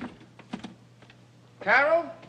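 A few small knocks and clicks as a leather briefcase is set down, then a man's short wordless vocal sound near the end.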